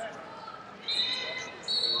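Wrestling shoes squeaking on the mat as the wrestlers walk, twice: a short high squeak about a second in and another near the end, over hall chatter.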